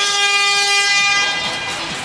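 A single held horn-like tone with many overtones, sounding steadily for about a second and a half right after a quick falling sweep, then fading out.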